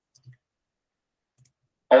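Near quiet, with one faint, short click about a third of a second in; speech starts at the very end.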